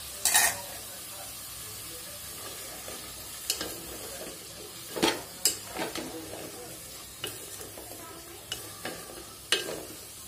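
A wooden spatula stirs green beans and potatoes in a stainless steel pot over a gas flame, knocking against the pot several times over a steady sizzle. A louder clank comes just after the start.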